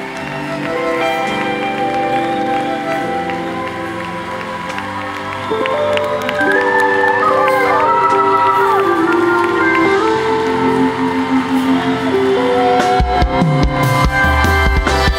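Live band music under the altar call: sustained chords with a melody line over them, growing louder about five seconds in, with bass and drums coming in near the end.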